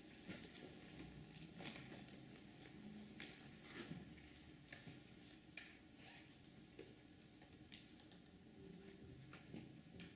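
Near silence with faint, scattered clicks and taps from hands working the controls of a synthesizer and a homemade turntable looping rig.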